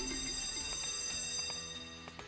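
Sugar Rush 1000 online slot game sound effects: a bright, bell-like chime rings out and slowly fades as three scatter symbols trigger the free spins bonus. A few lower notes join in about a second in.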